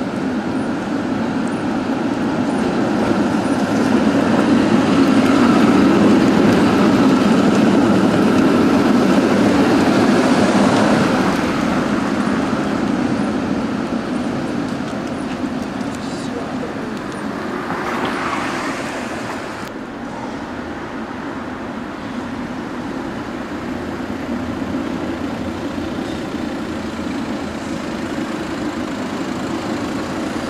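City street traffic with a steady rumble of vehicle running noise, loudest in the first third, and a louder vehicle passing about 18 seconds in.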